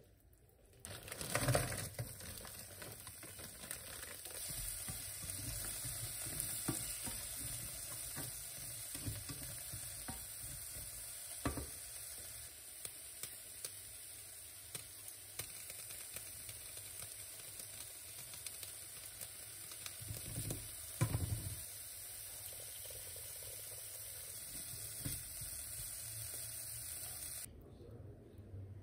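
Carrots and broccoli sizzling in a non-stick frying pan. A steady hiss starts about a second in and cuts off just before the end, with a few knocks against the pan along the way.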